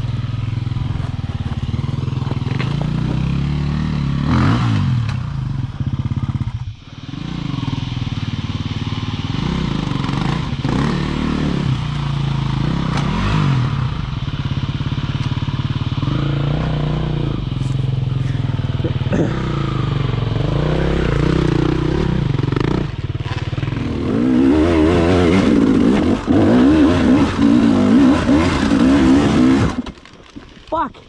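Enduro dirt bike engine being ridden, its revs rising and falling with the throttle. The engine drops away briefly about seven seconds in, and it revs louder and harder in the last few seconds.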